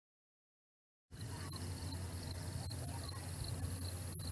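Silence for about the first second, then steady outdoor garden ambience: a low hum with faint, high-pitched chirping over it.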